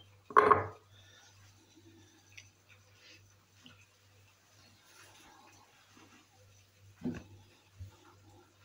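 Faint clicks and light knocks of cucumber pieces and garlic being packed by hand into a glass jar, with a brief louder sound just after the start.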